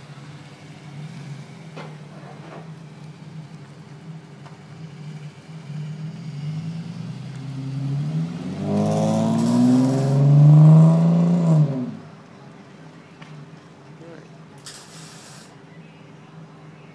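A 2002 Dodge Intrepid's V6 running through a single-in, dual-out Magnaflow muffler: a steady low exhaust note at first, then the car accelerates away. About eight seconds in the note rises in pitch and grows loud, then it falls away suddenly about twelve seconds in.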